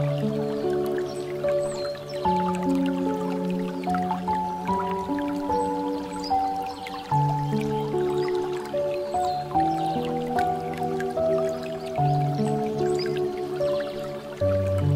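Slow piano music with held notes, over water trickling and dripping from a bamboo spout fountain.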